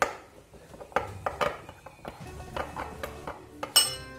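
A metal spoon clinking and scraping against a ceramic bowl while henna powder is stirred. The clicks come irregularly, with the loudest knock near the end.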